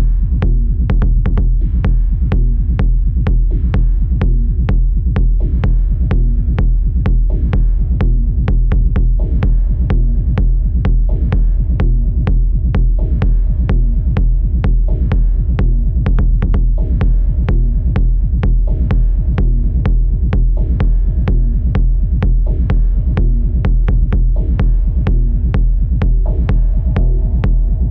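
Deep, dark minimal techno played live on hardware drum machines, synthesizers and a modular synth: a steady kick drum about two beats a second over a deep, droning bass, with faint higher synth tones.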